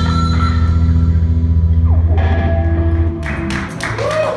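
Live rock band holding its final chord, electric guitars and bass ringing steadily through amplifiers, cut off about three seconds in; a few short, sharp noises follow.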